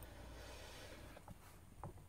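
Near silence with a faint hiss, broken by two faint small clicks in the second half: a metal pry tool unclipping a flex-cable connector from the board of a Samsung Galaxy S4 mini.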